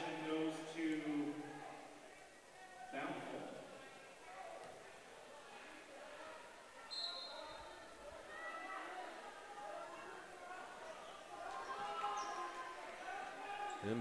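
Players and spectators calling out and chattering in a school gymnasium, the voices scattered and not close to the microphone, with a short high tone about seven seconds in.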